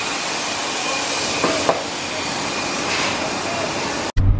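A steady machine hiss with a faint high whine running through it, swelling slightly, with two small knocks about a second and a half in.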